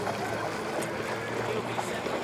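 A steady low engine hum under an even outdoor haze, with faint distant voices.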